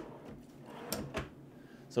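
A wooden toe-kick drawer at the base of a kitchen cabinet being pulled open by hand: a soft sliding sound on its runners, then two clicks close together about a second in.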